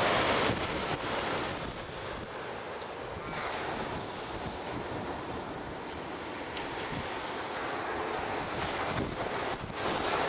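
Steady wash of small surf waves breaking along an ocean beach, heard from a distance, with light wind on the microphone.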